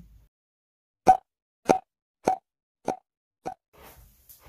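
Five short, pitched pops evenly spaced about 0.6 s apart, each quieter than the last, over dead silence. This is an edited-in pop sound effect.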